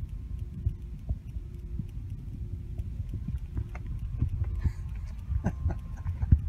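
Low outdoor rumble with scattered soft knocks and clicks from a handheld phone being moved, growing busier in the second half; a faint steady hum runs underneath.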